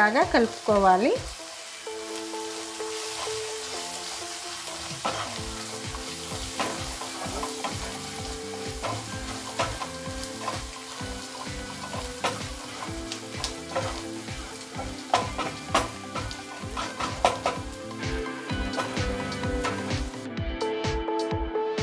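Onions and spice powders sizzling in a non-stick kadai while a wooden spatula stirs and scrapes through them, with frequent irregular knocks of the spatula against the pan. Soft background music with a steady beat runs underneath.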